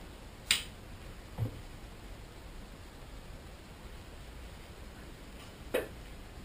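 Camera and telescope gear being handled, heard as a few small sounds over quiet room tone: a sharp click about half a second in, a soft knock about a second later, and another click near the end.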